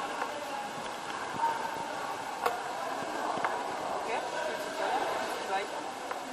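Indoor swimming-pool hall background with indistinct voices of other people, and a few short sharp knocks, the loudest about halfway through.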